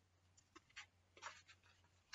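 Near silence with a few faint, short clicks and rustles of pens or crayons being handled at a table.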